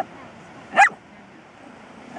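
Small dog giving a single short, high yip about a second in, rising quickly in pitch.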